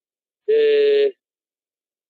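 A man's drawn-out hesitation sound, "eh", held on one steady pitch for about half a second, starting about half a second in.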